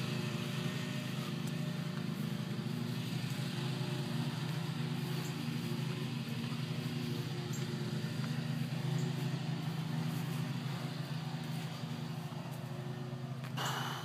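A steady low mechanical hum, like an engine or motor running, throughout. A short sharp knock near the end.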